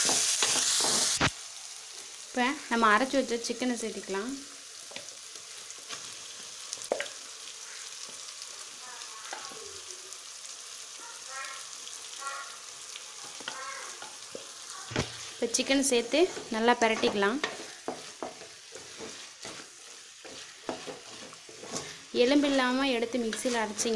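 Onions, tomatoes and curry leaves sizzling in hot oil in a metal kadai. The loud sizzle drops suddenly about a second in, then quieter frying goes on under the scrape and knock of a wooden spatula stirring the pan.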